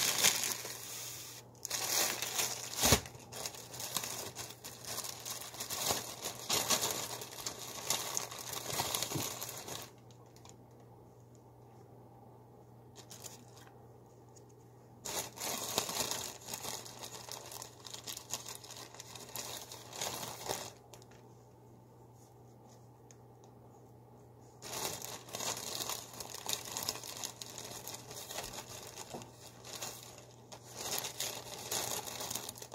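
Thin plastic bread and deli-meat bags crinkling as they are handled, in three spells of several seconds each with quieter gaps between.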